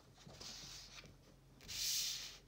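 A hand sliding sheets of paper across each other, two dry rubbing swishes, the second louder near the end.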